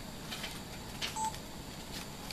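A single short electronic beep a little after a second in, with light rustling and clicks as books are handled.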